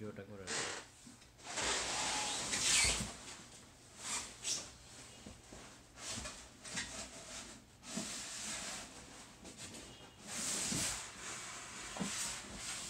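Large cardboard TV carton being lifted and slid up off its foam packing: cardboard rubbing and scraping in several irregular bursts.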